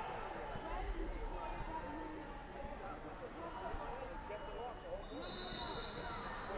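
Indistinct chatter of many voices echoing in a large gym hall, with a few dull low thumps about a second in.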